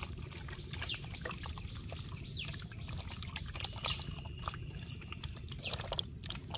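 Wet squishing and scattered soft clicks of raw chicken pieces being kneaded by hand in marinade on a plate, over a steady low rumble. A few short, high downward bird chirps come in now and then.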